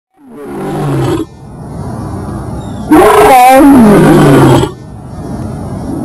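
Lion roaring: a short call in the first second, then a longer, louder roar about three seconds in.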